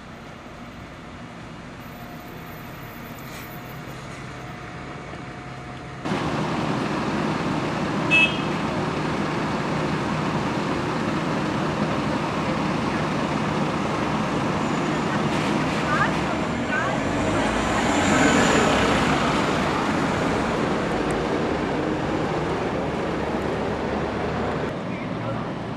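Bus engines and street traffic: quiet at first, then after a sudden jump in level a steady engine drone that swells around the middle as a bus passes close. A short high beep sounds a couple of seconds after the jump.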